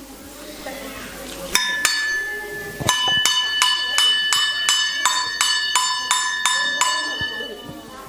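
A bell-like metal chime struck to mark a clock striking midnight: one ringing strike, then a quick, even series of about a dozen strikes, roughly three a second, each ringing on the same clear pitch.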